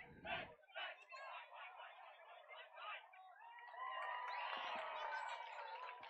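Distant crowd voices: chatter and shouting from players and sideline spectators, growing louder with overlapping calling voices in the second half.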